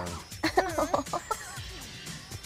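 People laughing in short, high, wavering bursts about half a second in, dying away after a second.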